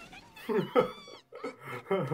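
An anime character's high-pitched voice stammering a startled exclamation in Japanese, its pitch sliding up and down. Towards the end a man laughs.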